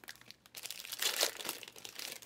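Foil wrappers of Panini Prizm football card packs crinkling and rustling as the packs are handled and torn open, in irregular bursts that are loudest about a second in.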